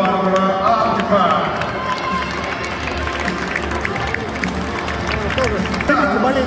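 Music over an arena's sound system, with voices, crowd noise and scattered clapping, in a large sports hall.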